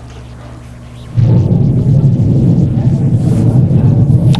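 Audio of a video clip of copper wire being burned at an e-waste scrapyard, played through a lecture hall's speakers: a loud, steady, low rumble that starts suddenly about a second in.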